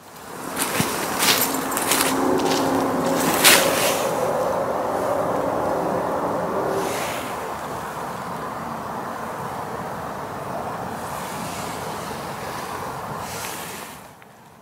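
An unexplained noise in night-time woodland, replayed boosted in volume: a few sharp snaps in the first four seconds and a low pitched grinding sound lasting a few seconds, over loud hiss from the amplification.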